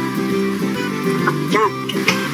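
Background instrumental music, a run of short changing notes, with a brief voice-like sound near the end.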